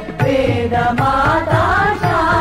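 Devotional Sai bhajan music: a gliding sung melody over steady hand-drum strokes.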